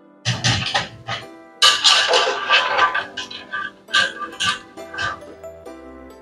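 Hot frying oil sizzling and a wire spider strainer scraping and clattering in the pot as pieces of fried goat meat are scooped out, in irregular loud bursts over steady background piano music.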